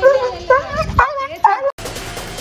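Rottweiler whining and yelping while restrained, a run of short cries that rise and fall, about two a second. Near the end it cuts off suddenly and electronic music begins.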